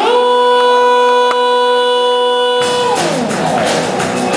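Live band music: a long sustained note with rich overtones slides up at the start, holds steady, then slides down about three seconds in as drums and cymbals come in.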